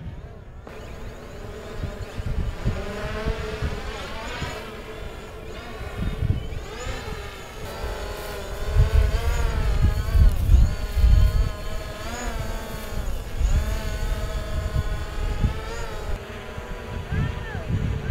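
Small quadcopter drone buzzing steadily, its pitch rising and falling as the propellers speed up and slow down while it manoeuvres. Wind gusts on the microphone, strongest about a third of the way in and around the middle.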